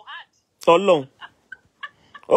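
A single loud, short vocal sound from a person, falling in pitch, with a few faint short sounds around it.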